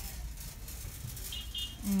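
Store background sound: a low hum with faint hiss and rustle, and two short high-pitched beeps about a second and a half in.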